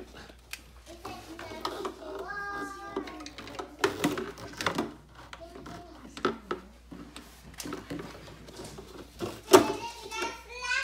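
A young child's voice babbling and calling in a small room, mixed with scattered clicks and knocks of handling; a sharp knock near the end is the loudest sound.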